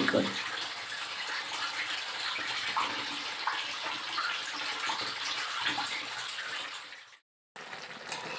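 Water running steadily in a bathroom; it stops abruptly about seven seconds in.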